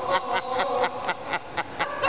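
A person's voice in a rapid run of short, evenly spaced bursts, about six a second.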